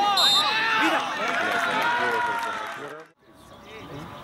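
Several men shouting on a football pitch, their voices overlapping, with a short referee's whistle blast just after the start for a foul. The sound breaks off abruptly about three seconds in.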